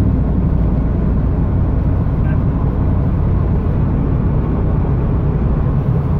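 1997 Pontiac Trans Am WS6's LT1 V8 cruising steadily at low revs, heard from inside the cabin as a low engine drone mixed with road and tyre noise.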